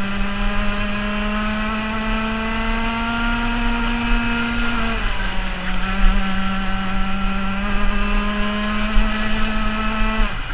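Rotax FR 125 Max kart's single-cylinder two-stroke engine at high revs, its pitch climbing steadily down a straight. About five seconds in it dips sharply as the driver lifts for a corner, then climbs again on the next straight.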